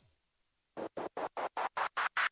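DJ-mix intro effect: after a short silence, a fast roll of short scratchy noise hits, about six or seven a second, growing steadily louder as it builds up to the song.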